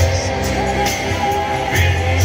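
Live gospel band playing loud through a PA system, with guitar, a heavy bass line and drum hits.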